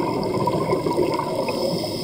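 Steady underwater gurgling and rushing of a scuba diver's exhaled air bubbles leaving the regulator, heard underwater through the camera housing.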